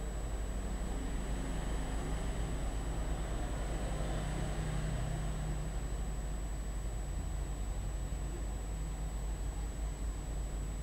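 Steady outdoor urban background noise: a low rumble, with a faint constant high-pitched whine above it.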